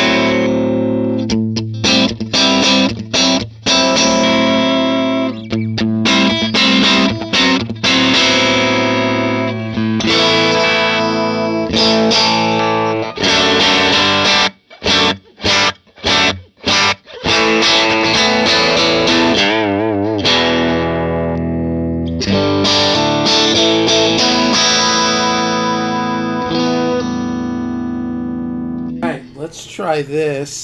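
Electric guitar played through a Divided by 13 FTR 37 valve amp with its gain switch pulled out, giving an overdriven tone. Choppy chords with short stops, a held chord with wavering pitch about two-thirds through, and a final chord left to ring and fade near the end.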